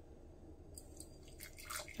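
Boiling water poured from a kettle into a glass jar of dried chamomile: a faint pouring hiss that starts about three-quarters of a second in and grows louder near the end.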